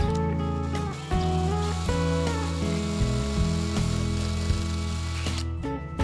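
DeWalt cordless drill-driver running for about five seconds, boring into the wooden tabletop at a hole in the steel leg frame, over background guitar music.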